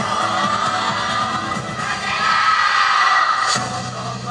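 Many voices shouting together over yosakoi dance music, swelling to a loud peak in the second half and breaking off sharply near the end.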